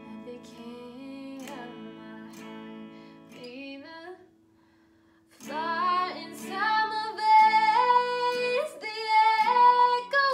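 A woman singing along to strummed chords on a hollow-body guitar: softly at first, then a short laugh and a pause of about a second, then louder singing over the strumming.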